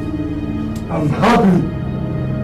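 Background film music of steady held tones, with one loud wordless cry about a second in, its pitch bending up and down.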